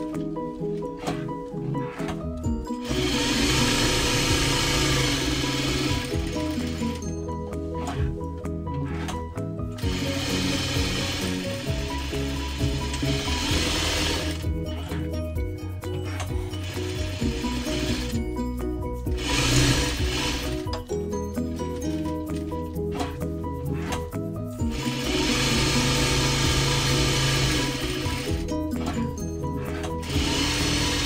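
Electric sewing machine stitching cotton fabric in bursts. It runs fast and steady for a few seconds at a time, and in between slows to a run of separate stitch-by-stitch ticks.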